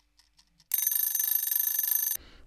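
An alarm-clock ringing sound effect, a bright, fast-fluttering ring lasting about a second and a half. It starts under a second in and marks a 40-minute timer running out.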